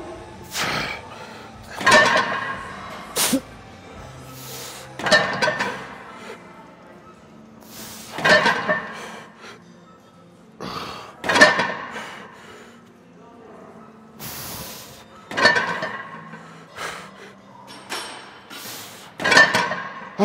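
A man grunting and breathing out hard with each press of a heavy set on a plate-loaded chest press machine, a strained burst about every three seconds, over faint gym background music.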